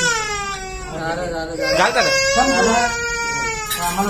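Toddler crying in long wails that slowly fall in pitch, with a short rising gasp between the two wails about two seconds in. He is crying just after a foreign body has been taken out of his nose.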